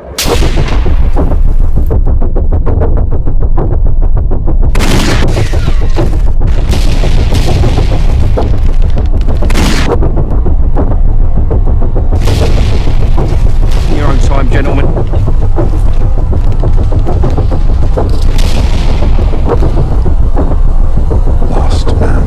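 Loud battle sound mix of rifle and machine-gun fire with explosions, with a run of rapid fire a couple of seconds in and heavy blasts throughout over a deep continuous rumble.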